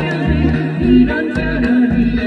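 A woman singing a Korean song into a microphone, her voice wavering in pitch, over musical accompaniment with a bouncing bass line and regular drum beats.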